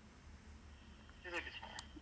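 Quiet room tone, then a brief faint spoken word about two-thirds of the way in and a single small click just before the end.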